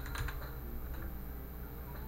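Computer keyboard keystrokes: a few light key clicks near the start, then only a steady low background hum.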